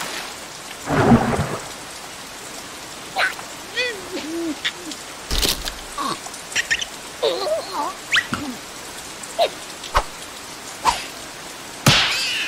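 Steady rain falling, with a low rumble about a second in. Short squeaky gliding sounds and a few sharp clicks are scattered through.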